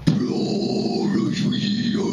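A man's guttural growl, a harsh extreme-metal vocal, held as one long rough note into a handheld microphone with no backing music.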